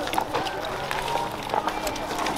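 Footsteps of several people walking over leaf litter and mulch: many short scuffs and crunches, with indistinct voices in the background.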